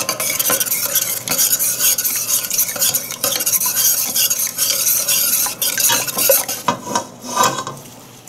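A metal ladle stirring a thin sauce in a stainless steel pot, the liquid swishing while the ladle scrapes and ticks against the bottom and sides of the pot. The stirring eases off near the end.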